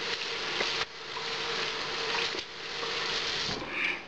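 Kitchen tap running into the sink, a steady hiss of water that dips twice and stops shortly before the end.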